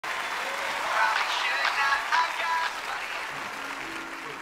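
Studio audience applause mixed with music, fading a little toward the end.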